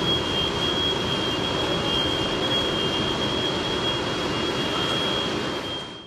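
Steady machinery noise in a natural stone processing factory hall, with a thin, high, steady whine running over it, fading out near the end.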